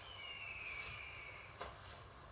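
A faint bird call: one whistled note falling in pitch over about a second and a half, then a short click.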